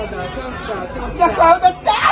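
Several people talking over one another in lively chatter, with one voice rising louder about one and a half seconds in.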